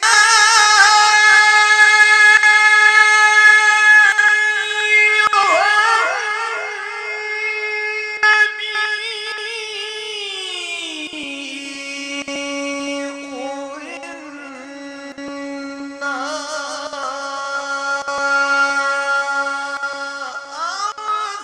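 A man chanting Qur'an recitation (qira'at) in a melodic, ornamented style through the stage microphones. He holds a loud, high note with wavering turns, then about ten seconds in slides down to a lower, softer held note.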